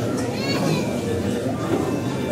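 A congregation praying aloud all at once, many voices overlapping into a steady mass of speech.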